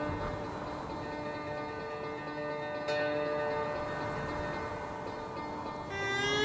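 A bell rings with long sustained tones, struck again about three seconds in while the earlier stroke is still ringing.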